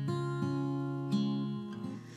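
Cutaway acoustic guitar played alone, strummed chords ringing out and changing a few times, dying down near the end.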